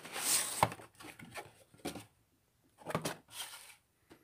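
Cardboard sleeve sliding off a headphone box with a brief scrape that ends in a sharp click, then a few short knocks and taps as the bare cardboard box is handled.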